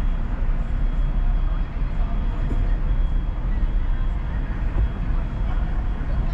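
Car driving at low speed, a steady low rumble of engine and road noise.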